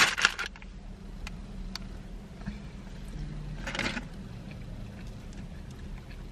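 Steady low hum of a car cabin with a few faint clicks, and a short crinkle of a plastic snack packet about four seconds in.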